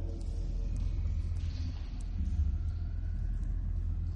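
Deep, steady rumbling drone of a film's sound design, with faint high ticks now and then.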